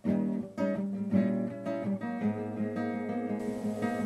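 Acoustic guitar playing a classical-style piece, plucked notes and chords over a held bass note, starting suddenly out of silence.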